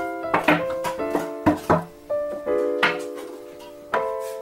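Background piano music with a gentle, changing melody. Over it come several short knocks as wooden blocks and plastic PVC pipe fittings are set down on a wooden workbench.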